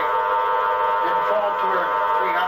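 Spiricom device putting out a buzzy, robotic voice: speech shaped over a steady bank of fixed electronic tones on one unchanging pitch, running without a break.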